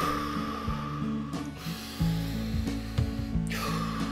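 A person breathing deeply in the Wim Hof hyperventilation rhythm: full breaths drawn in through the nose and let out through the mouth, three long breath sounds in a row. Steady background music plays beneath.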